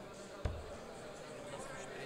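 A steel-tip dart thuds once into a Winmau Blade bristle dartboard about half a second in, over low background chatter in the hall.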